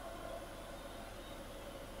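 Faint, steady background hiss with a low electrical hum underneath: room tone or recording noise, with no clear event in it.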